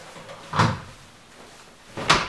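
A single short knock about half a second in, with a brief ring after it.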